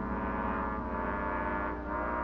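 Orchestral horror film score: dark, sustained brass chords over a low drone, with a fresh brass swell entering at the start and again near the end.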